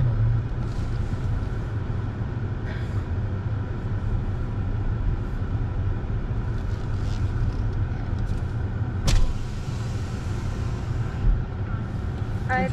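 A car rolling slowly, heard from inside the cabin: a steady low rumble of engine and tyres. A sharp click comes about nine seconds in and a short thump near the end.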